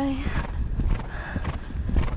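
Horse's hoofbeats drumming on turf at a fast pace, with wind buffeting the microphone underneath.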